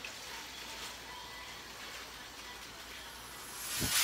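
Dry cake mix pouring from a bag into a plastic mixing bowl, a soft steady hiss, with a thump just before the end.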